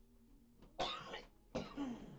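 A person coughing twice, two short harsh coughs a little under a second apart.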